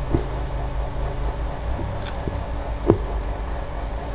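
A few small clicks, the sharpest just before three seconds in, from a metal BGA stencil being shifted and pressed onto a phone CPU chip, over a steady low hum.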